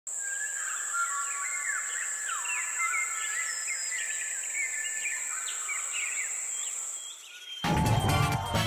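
Nature ambience of many birds calling with short whistled, gliding calls over a steady high-pitched insect drone. Near the end it cuts out, and music with a heavy bass starts abruptly.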